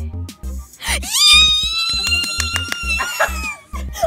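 Background music with a steady beat, over which a girl lets out a long, high scream starting about a second in. She holds it for about two and a half seconds before it falls away.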